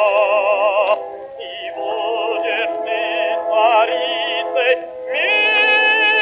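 Operatic baritone singing with accompaniment in an old, narrow-band recording. Long notes are held with a wide vibrato: one breaks off about a second in, shorter phrases follow, and a new long note starts near the end.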